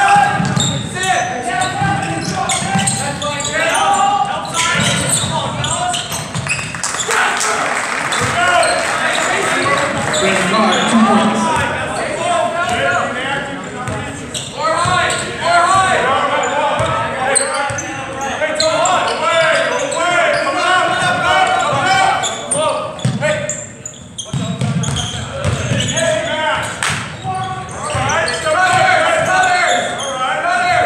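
Basketball bouncing on a hardwood gym floor during play, with many voices of players and spectators talking and calling out, echoing in a large gym.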